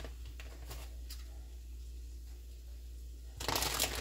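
A low steady hum with a few faint clicks, then near the end a loud burst of plastic bag crinkling as a bag is handled.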